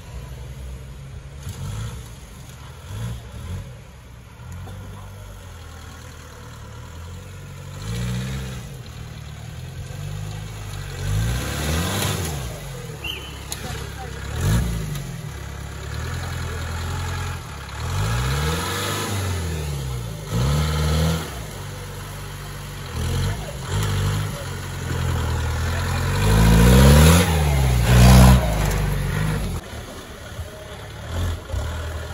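Modified Willys-style 4x4 jeep engine revving again and again under load on a muddy off-road climb. Each burst rises and falls in pitch over a second or two, and the loudest revs come near the end.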